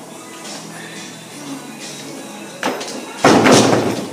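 A heavily loaded barbell with bumper plates dropped from a block pull back onto wooden blocks: a sharp knock a little past halfway, then a loud crash about three-quarters in, over background music.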